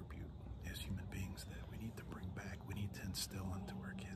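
A man speaking softly in a whisper; his words are too faint for the recogniser to catch.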